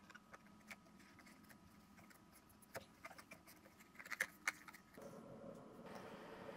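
Faint clicks and taps of plastic model-kit wall pieces being handled and fitted together, with a few sharper clicks about four seconds in.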